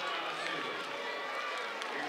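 Steady crowd noise: many voices chattering and cheering together, with no single voice standing out.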